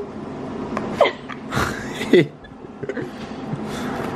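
A few brief laughs and short vocal sounds, with light scraping and clicks of a table knife scooping butter from a plastic tub and spreading it on bagel halves.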